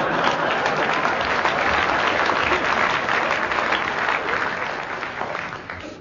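Studio audience applauding, a dense patter of many hands clapping at once, which gradually dies away near the end.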